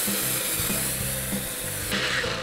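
A Cuisinart compact blender's 350-watt motor runs its small blade cup at a steady whir, grinding flaxseed into meal. It stops just before the end.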